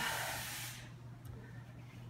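A breath drawn into a close microphone, a soft hiss lasting a little under a second, followed by quiet with a low steady hum.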